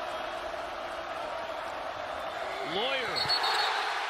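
Basketball arena crowd noise during live play, with a ball bouncing on the hardwood court. Near the end a voice shouts, and a short high referee's whistle stops play for a jump ball.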